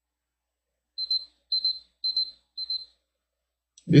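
An electronic timer beeping four times, short high-pitched beeps about half a second apart, signalling that a timed five-minute period is up.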